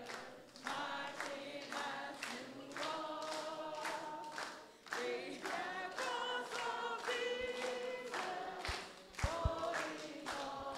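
A group of children and a woman at a microphone singing a song together, with no instruments playing. A few short low thumps come near the end.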